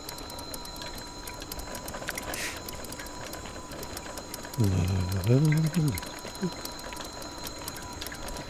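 Liberty electric trike riding along, with a faint steady whine from its electric motor and light ticking. A man's voice is heard briefly about halfway through, without clear words.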